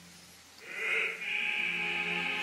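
After about half a second of hush, an opera singer's voice enters on a high held note. Other voices and the orchestra come in underneath it.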